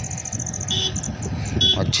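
Insects trilling high and steady, fading out about a second in, with a short chirp roughly once a second, over a low rumble of truck traffic on the road.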